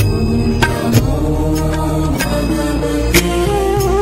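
Hindu devotional music: a held, chanted melody over a steady low drone, with sharp percussive strikes roughly once a second.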